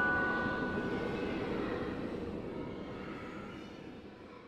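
The tail of the song's backing track: the last glockenspiel-like chime notes ring out over a steady, noisy ambient drone, and the drone fades out gradually.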